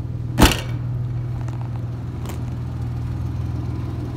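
Car engine idling with a steady low hum, and a single loud slam about half a second in as the car's tailgate is shut. A fainter click follows about two seconds in.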